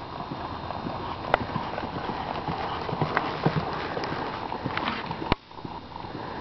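Hoofbeats of a ridden horse jogging on soft arena dirt, over a steady hiss. Two sharp clicks, one about a second in and one near the end.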